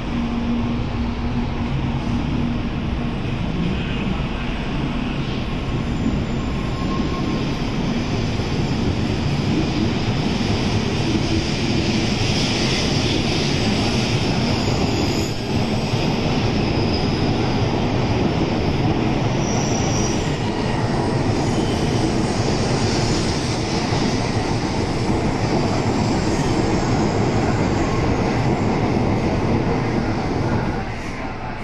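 N700-series Shinkansen train pulling out of the platform and running past, a loud steady rush of wheels and air that builds over the first ten seconds or so. A low hum sounds in the first couple of seconds.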